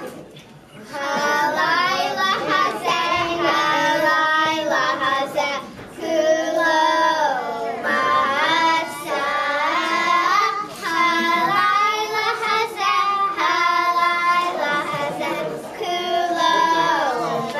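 Singing: a melody sung in sustained phrases, with short breaks between them.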